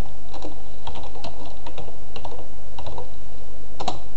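Computer keyboard keys clicking in an uneven run as a search term is typed, with one louder click near the end as the search is entered. A steady low hum runs underneath.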